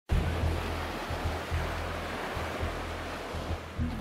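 Small sea surf washing onto a sandy shore, a steady rushing noise, with background music carrying a low, regular bass beat over it.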